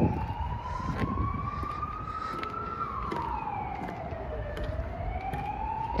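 Emergency vehicle siren wailing: one tone that rises slowly over the first few seconds, falls around the middle and climbs again near the end, over low background noise.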